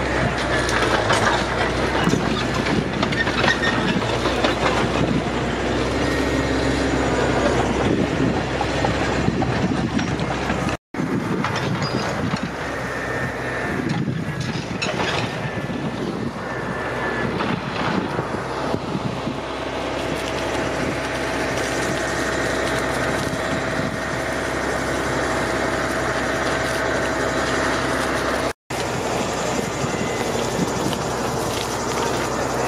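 Brush fire burning in dry scrub: a continuous loud crackling and rushing noise over a steady low hum. From about two-thirds of the way in, a faint steady tone joins it. The sound drops out briefly twice.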